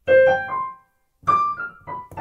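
Roland LX706 digital piano playing a few notes through its built-in speakers with an acoustic-piano tone, a pause of about half a second, then a few more notes.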